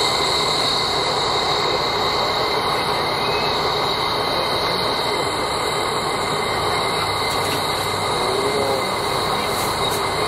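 JNR Class C57 steam locomotive C57 1 standing in steam, giving a steady, even hiss of escaping steam with a high, whistling edge.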